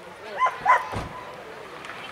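A dog barking twice in quick succession, two short sharp barks, over faint voices.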